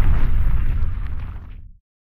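Deep rumbling boom of a logo-animation sound effect, its low rumble dying away and ending abruptly in silence near the end.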